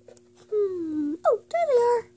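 A high-pitched wordless vocal wail. It starts as a long falling moan about half a second in, then turns into a short rising cry and a drawn-out arching wail.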